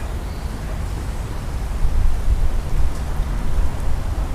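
Wind buffeting the camera's microphone outdoors: an irregular low rumble over a steady hiss.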